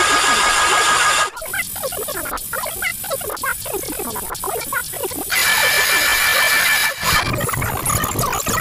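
Heavily distorted, effects-processed cartoon audio: two loud hissing blasts with steady high tones, the first over by about a second in and the second near the end, with short squealing, sped-up sounds between them.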